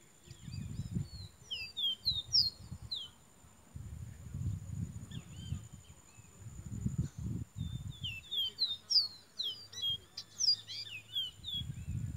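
Caboclinho (capped seedeater) singing in two bouts of quick, high, down-slurred whistled notes, a short one about a second and a half in and a longer one from about seven and a half seconds until near the end, over a low rumbling noise.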